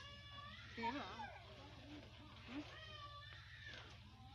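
A cat meowing twice: two long, wavering calls, the first right at the start and the second a little under three seconds in.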